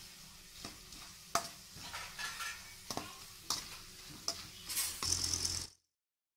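Dried bitter gourd slices sizzling as they fry in hot oil, stirred with a metal spoon that knocks against the pan about once a second. The sizzle grows louder near the end, then cuts off suddenly.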